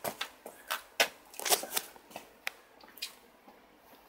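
Handling noise: a string of irregular light clicks and rustles, thickest in the first two seconds and thinning out near the end, as the phone filming is moved around.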